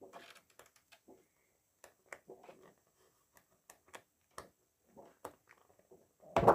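Near silence with faint, scattered soft rustles and ticks of paper sheets being turned in a patterned scrapbook paper pad.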